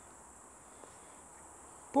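Crickets chirring in a steady, unbroken high-pitched buzz; a voice starts right at the end.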